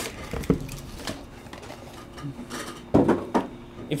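Light handling noises of cardboard card boxes on a table: a small knock about half a second in and a short, louder rustle about three seconds in.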